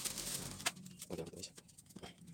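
Plastic bag of loose substrate rustling as it is handled and tipped out, with one sharp click about two-thirds of a second in.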